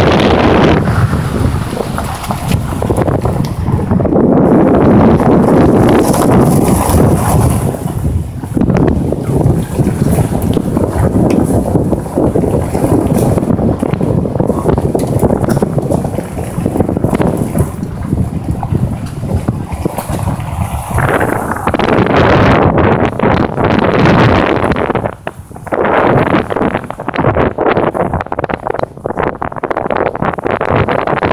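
Wind buffeting the microphone of a camera carried on a moving vehicle: a loud, uneven rushing that rises and falls, briefly dropping away about 25 seconds in.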